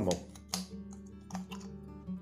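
Sharp plastic clicks from a serrated knife prying the glued plastic dome off an LED bulb, a few of them about half a second apart, over steady background acoustic guitar music.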